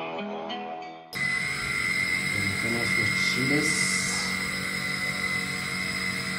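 Instrumental music cuts off about a second in. A steady kitchen background follows: an even hiss with a constant high whine, and faint voices.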